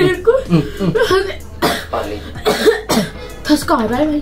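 People's voices with coughing and spluttering, over background music.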